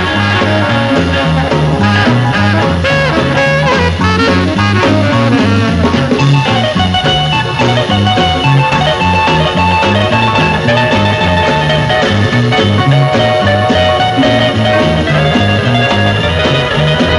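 A rock and roll band playing an instrumental break between verses: saxophone and electric guitar over drums and an upright bass, with a bass line stepping note by note.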